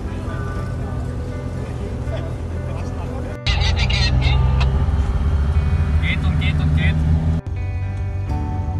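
Background music, broken about three and a half seconds in by a louder stretch of a Steyr-Puch Pinzgauer off-road truck's engine running as it drives past close by. The music returns suddenly near the end.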